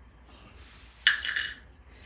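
A short clinking clatter of hard plates knocking together about a second in, as the die-cutting machine's clear cutting plates are handled.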